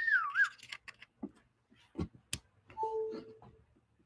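A laptop with its webcam being handled and repositioned: a few sharp clicks and knocks. A short wavering, whistle-like tone sounds at the start, and a brief steady chime-like tone about three seconds in.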